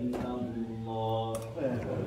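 A man chanting the iqama, the call to stand for congregational prayer, into a microphone and over a loudspeaker, in long held melodic notes that glide downward near the end.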